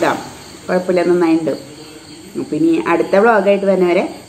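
A woman talking in short phrases with brief pauses between them.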